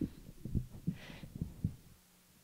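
Microphone handling noise: a handful of dull, irregular low thumps as a hand works a vocal microphone in its stand clip.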